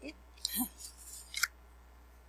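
A laminated paper card being handled and laid down on a flat surface: a short rustling slide about half a second in, then a single sharp click.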